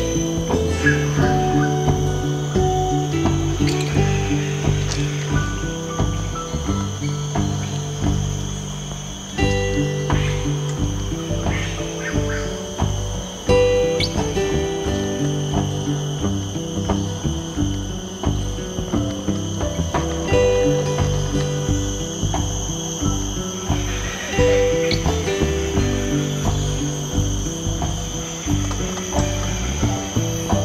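Background music with a steady beat and a low melody of held, changing notes.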